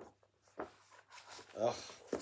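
Pages of a large hardback picture book being turned over by hand: a few short papery rustles and flaps.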